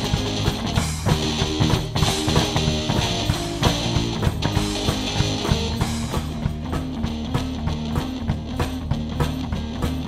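One-man band playing a rock and roll instrumental break: electric guitar over a steady beat on a foot-pedal kick drum and snare, with no singing.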